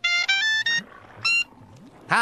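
Clarinet playing a quick run of short notes stepping upward in pitch, then, after a brief pause, one more short note a little after a second in.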